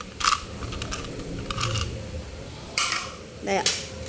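Four brief, sharp clicks and rattles of a telescopic fishing rod's tip being handled: its clear plastic tip cap and metal line guides knocking together.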